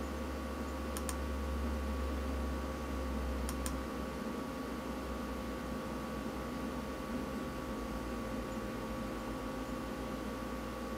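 Steady low electrical hum, with faint double clicks about a second in and again a little before four seconds.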